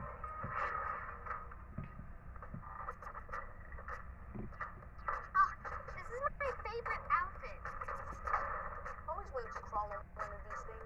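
Muffled, indistinct voices from a TV show's soundtrack, thin and boxy as heard through a television speaker, growing busier in the second half.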